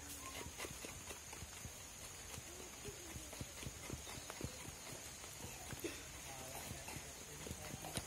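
Irregular light knocks and scrapes, several a second, from hands working white arrowroot pulp on a banana leaf, over a steady faint high-pitched hiss.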